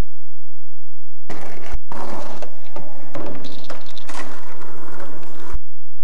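Skateboard wheels and trucks rolling and scraping on concrete, loud and harsh on the camcorder microphone, for about four seconds, with a sharp knock about two seconds in and another near the end.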